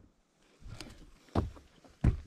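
Footsteps of a hiker walking up to the foot of a trail's wooden stairs: two soft steps, about a second in and near the end, the second louder as they come closer.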